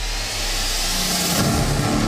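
Eight-wheeled WHAP armoured vehicle driving past: a rush of noise swelling over the first second and a half, then a low engine drone.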